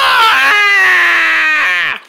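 A person's long, drawn-out scream of "ahh". The pitch sinks slowly, then glides down and cuts off near the end.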